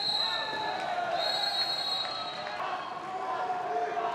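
A referee's whistle blown twice, a short blast at the start and a longer one of about a second and a half, over a crowd's shouting voices.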